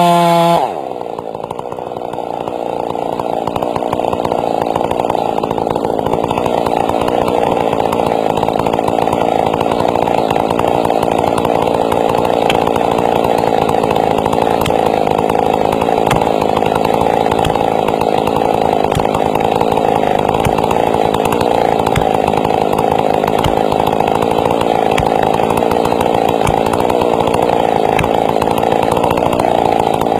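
Gasoline chainsaw running in a felling cut through a large tree trunk. Its revs swing up and down, then settle about a second in to one steady, even pitch under load for the rest.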